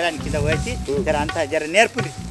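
Voices speaking or calling with a wavering, warbling pitch, over low steady background music.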